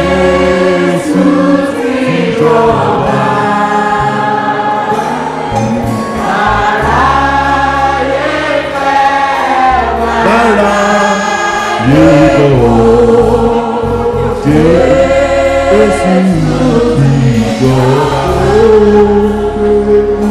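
A church congregation singing a gospel hymn together over a steady low bass accompaniment.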